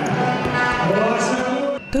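Music with a singing voice holding long, slowly gliding notes, cut off abruptly near the end.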